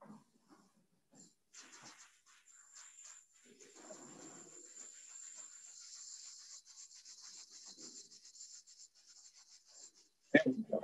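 Near silence with faint rustling and small scuffs and clicks, a person moving and handling things close to the microphone.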